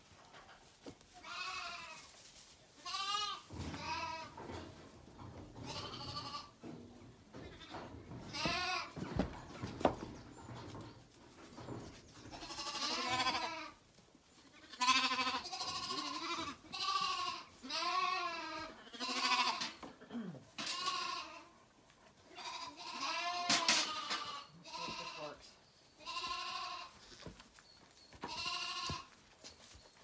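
Zwartbles lambs bleating over and over, each call short and wavering, coming every second or two. A single sharp knock about ten seconds in.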